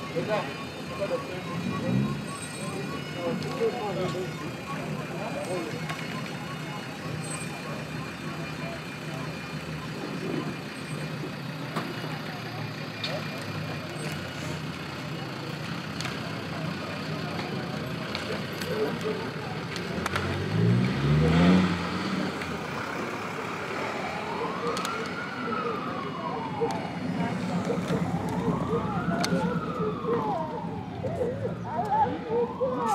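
Car engines idling and moving off slowly, with one engine revving up about twenty seconds in. Near the end a vehicle siren sounds two slow rising-and-falling wails.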